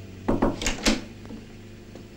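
A door being opened: a quick cluster of clicks and knocks from the handle and latch, about half a second in, over a low steady hum.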